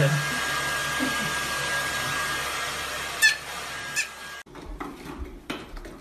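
Hair dryer blowing steadily with a steady whine, cutting off suddenly about four and a half seconds in. A brief high squeak, the loudest sound, comes just after three seconds. After the cut come quieter light knocks and clatter.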